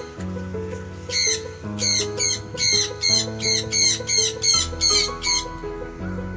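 Sulphur-crested cockatoo squawking in a fast run of harsh, high calls, about two or three a second, starting about a second in and stopping shortly before the end. Background music with a slow, low melody plays underneath throughout.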